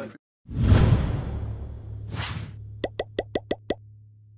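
Logo sting sound effect: a loud whoosh with a deep low boom, a second shorter whoosh, then a quick run of about seven short pitched pops over a low hum.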